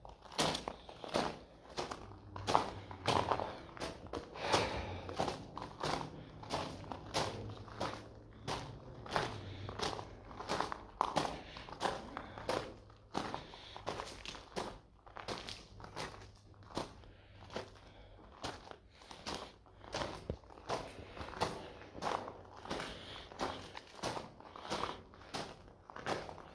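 Footsteps crunching on loose gravel, a steady walking pace of about two steps a second.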